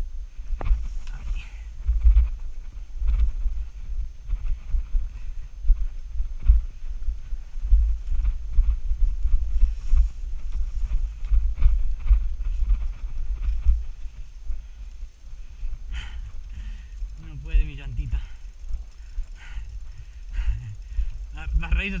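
Bicycle rattling and knocking as it rolls down a rough dirt singletrack, over a steady low rumble of wind and trail vibration on the handlebar-mounted camera. A brief voice comes in near the end.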